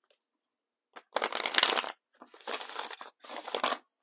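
Oracle cards being riffle shuffled: three fluttering bursts of card edges flicking past each other, the first and loudest starting about a second in.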